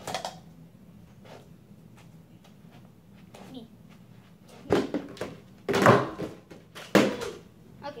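Three heavy thumps of feet landing and stamping on a floor during spinning side kicks, about five, six and seven seconds in.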